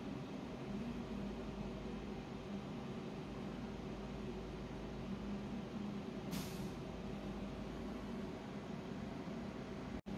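Steady low machine hum from equipment running in the room, with a brief soft hiss about six seconds in.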